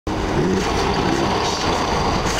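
Steady low rumble of car cabin noise.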